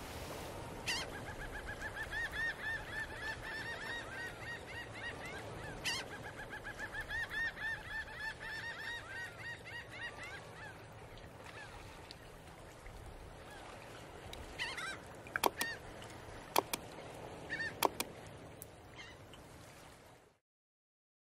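A flock of birds calling, many short repeated calls overlapping, thinning out and dying away about halfway through. Near the end come a few sharp clicks or knocks.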